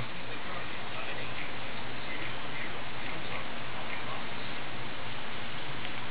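Steady background hiss with a faint low hum, even in level throughout.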